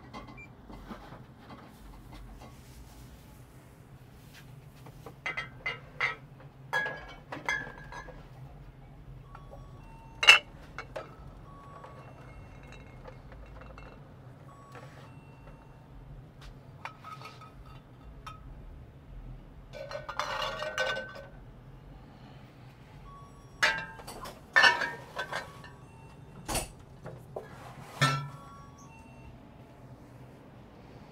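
Glass liquor bottles clinking and knocking against each other and the shelf as they are handled and arranged, in irregular bursts. The loudest ringing clink comes about ten seconds in. A steady low hum runs underneath.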